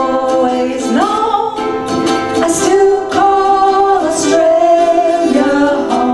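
A small ukulele group performing live: ukuleles and a banjo ukulele strummed in a steady rhythm under singing voices holding long notes, several of them sliding up into pitch.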